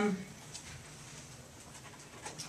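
A speaker's drawn-out "um" into a microphone trails off right at the start, followed by quiet room tone with a few faint clicks.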